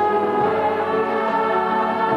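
Choral music: a choir singing sustained, held chords.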